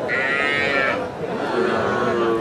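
A calf moos once: a high call lasting just under a second, heard over the chatter of the crowd.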